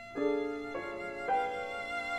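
Cello and grand piano playing slow contemporary classical music. Three new notes come in about half a second apart, each held ringing under the next.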